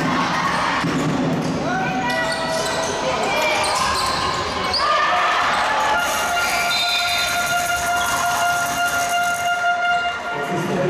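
Basketball game sounds in a gym: a ball bouncing on the hardwood court under players' and spectators' voices. From a little past halfway, a single steady horn-like tone is held for about four seconds.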